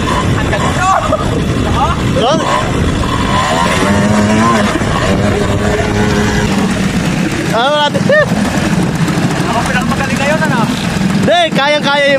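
Quad-bike (ATV) engines running steadily, with people's voices over them and two loud calls, about eight seconds in and near the end.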